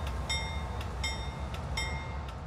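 BNSF freight train passing: a steady low rumble of locomotive and wagons, with short high metallic ringing tones recurring every half second or so.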